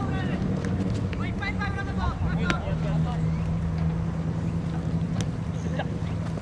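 Football players shouting and calling to each other during play, with a few sharp knocks of the ball being kicked, over a steady low drone that starts about halfway through.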